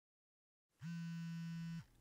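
A single low electric buzz, about a second long, that slides up in pitch as it starts and down as it stops.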